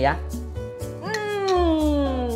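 A man's long, high-pitched 'mmm' of relish while chewing food, starting about a second in and falling steadily in pitch for over a second. Background music with a steady beat runs underneath.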